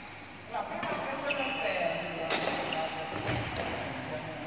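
Badminton rackets striking a shuttlecock in a rally: sharp hits, clearest twice about a second and a half apart, over people's voices.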